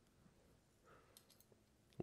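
Near silence, with a few faint clicks a little over a second in as small parts are handled on a metal-screwed plastic belt buckle.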